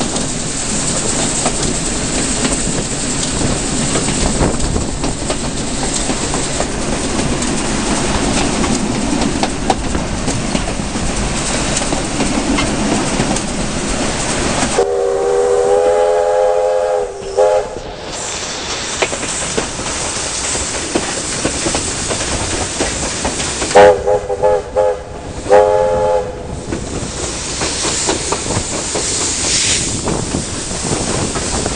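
Steam-hauled train running along the line with steady rumble and wheel clatter. About halfway through, the locomotive's steam whistle sounds one long chord-like blast, then two short blasts near the end.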